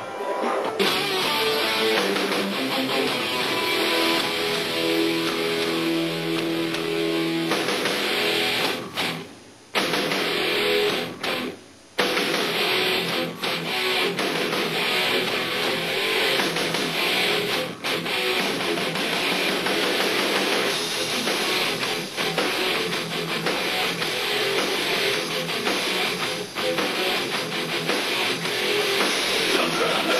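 Live rock band playing, an electric guitar strummed with a drum kit. The music drops out briefly twice about ten seconds in, then carries on.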